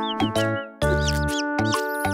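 Children's song backing music with a string of short, high, squeaky chirps for cartoon baby birds. The music drops out briefly about halfway through and then comes back.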